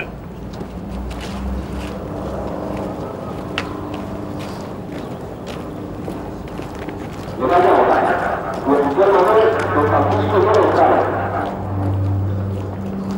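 Indistinct voices over a steady low hum, growing much louder and more crowded from about seven seconds in for some four seconds.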